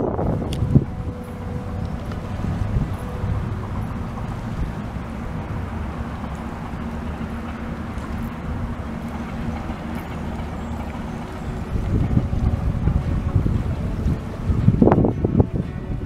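Wind rumbling on the microphone, with a faint steady hum underneath, swelling in gusts over the last few seconds.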